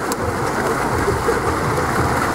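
Water polo players swimming and splashing in a pool: a steady, noisy wash of water.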